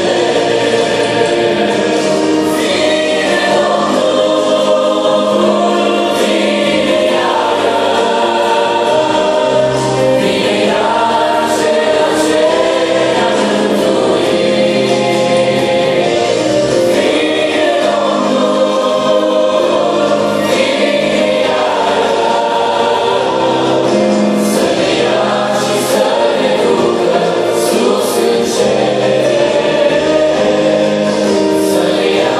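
A mixed group of men and women singing a Christian gospel song together into microphones, amplified through a PA.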